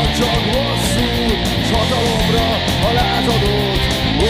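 Distorted electric guitar playing heavy rock over a full band track with drums, while a lead melody slides up and down in pitch.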